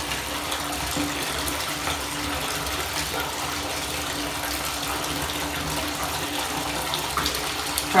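Water running from a bathtub spout into a partly filled tub: a steady splashing rush with a faint, steady hum underneath.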